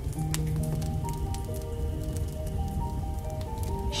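Slow, calm instrumental music with long held notes, over the crackling of a burning wood fire: scattered sharp snaps and pops.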